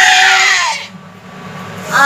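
A young child's high-pitched voice, a drawn-out cry trailing off over the first second, then a short lull before the child starts singing again at the very end.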